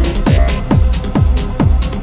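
Techno played in a DJ mix: a four-on-the-floor kick drum whose pitch drops on each beat, a little over two beats a second, with hi-hats between the kicks.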